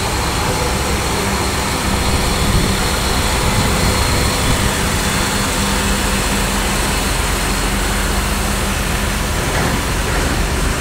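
Heavy diesel engine of a heavy-haul truck and multi-axle modular trailer rig running steadily as it moves slowly under load: a loud, continuous low drone with a constant hum.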